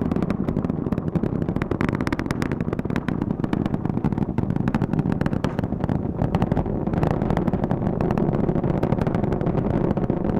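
Space Launch System rocket in ascent, its two solid rocket boosters and four RS-25 core-stage engines firing: a steady, loud, crackling rumble.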